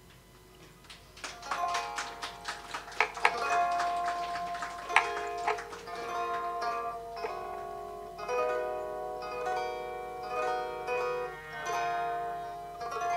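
A plucked string instrument, zither-like, playing a solo melody of ringing notes, starting after a quiet first second.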